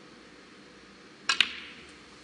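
A snooker cue tip strikes the cue ball, two sharp clicks close together a little over a second in, with a short echo after them.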